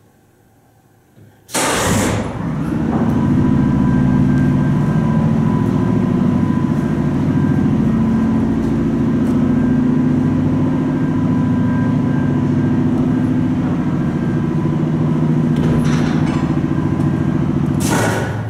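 Vintage Otis freight traction elevator's hoist machine starting with a sudden loud burst about a second and a half in, running with a steady hum and a high whine for the trip, then stopping with another burst near the end.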